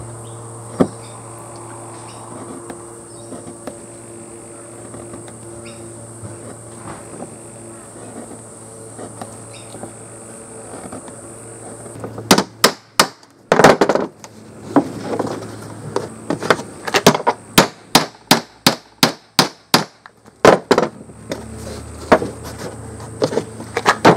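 A hammer striking a metal leather punch on a board: about twenty sharp, loud knocks starting about halfway through, irregular and often in quick pairs. Before them there is a steady high-pitched whine over a low hum, with a single click near the start.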